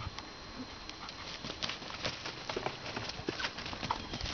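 Scattered light footfalls and ticks on grass from a deer and a dog moving about close by, irregular and growing busier after the first second.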